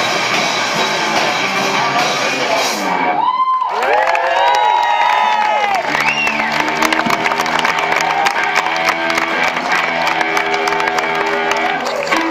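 Live rock band with electric guitars, bass and drum kit stops about three seconds in, and the audience cheers and whoops. From about six seconds, held guitar notes ring over scattered clapping.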